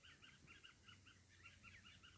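Near silence, with a bird's faint chirping in the background, a steady run of about five chirps a second.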